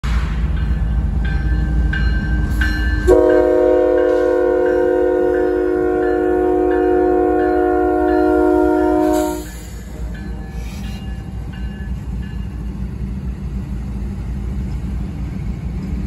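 CSX diesel locomotive 3380, a GE ET44AH, passing at the head of an empty coal train: its engine rumbles throughout, and about three seconds in it sounds one long horn blast, a multi-note chord held for about six seconds before cutting off. A crossing bell dings steadily in time through it.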